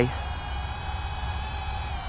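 Faint, steady high buzz of a Rotorious FPV Speck 80 brushed micro quadcopter's Spintech Sidewinder 8.5×20 mm motors and 55 mm Hubsan propellers as it hovers low, over a low rumble.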